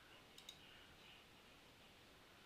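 Two faint computer mouse clicks close together about half a second in, over near silence.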